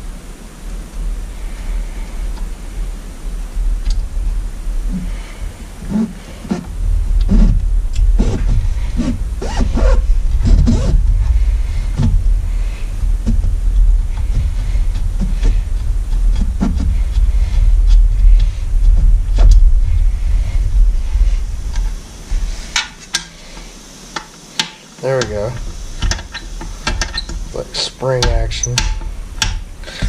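Handling noise from a spring-loaded latch being fitted by hand to an outboard motor's top cowl: scattered clicks and knocks of the latch parts, coming thicker over the last several seconds, over a low rumble.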